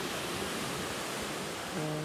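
Steady rushing noise of ocean surf breaking on rocks. A person's voice starts humming near the end.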